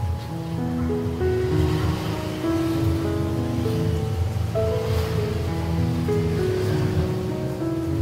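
Background music of slow, held melodic notes over the steady sizzle of sliced bananas deep-frying in a wok of hot oil.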